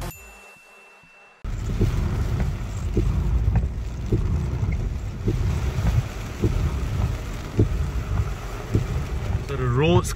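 Intro music fades out over the first second and a half, then an abrupt cut to the inside of a car moving slowly in rain: a steady low rumble from the car with rain on the body and windscreen, broken by soft irregular knocks. A man's voice starts near the end.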